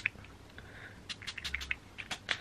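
Rose water spray bottle spritzed onto the face in short, quick bursts: one at the start, then a rapid run of about eight in the second half.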